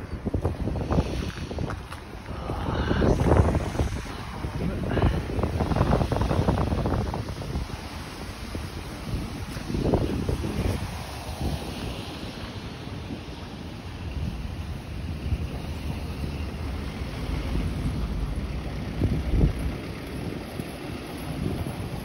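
Wind buffeting the microphone in irregular gusts, over traffic on a snowy road.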